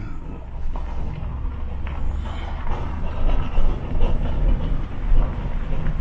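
Low, uneven rumble of a Ford half-ton pickup and the empty dump trailer it is towing, rolling slowly over a gravel lot.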